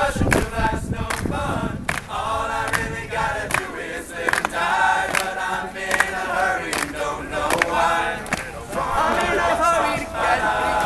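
All-male a cappella group singing in close harmony, with sharp percussive clicks keeping a steady beat about twice a second.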